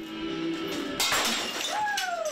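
An object smashed with a sudden shattering crash about a second in, over music with steady tones; a falling tone follows near the end.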